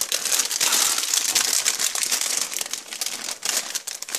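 Plastic produce bag of red grapes crinkling steadily as a hand rummages in it.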